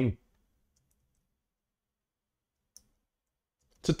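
Near silence with one short, sharp click at a computer about three quarters of the way through, and a few very faint ticks about a second in.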